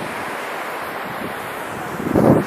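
Steady wash of sea surf mixed with wind, an even noise that neither rises nor falls.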